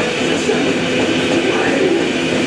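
Heavy metal band playing live: loud distorted electric guitars and drums in one dense, unbroken wall of sound.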